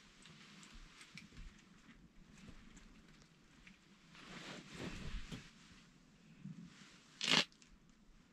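Faint rustling of heavy winter clothing and handling as an ice angler shifts while holding a short ice rod. There is a louder rustle about four to five seconds in and a brief, sharp scratchy noise near the end.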